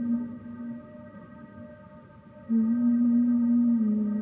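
Slow dhrupad-style improvisation for male voice and bowed double bass: a long held low note fades about a second in and comes back about 2.5 s in, then settles slightly lower, over a steady drone.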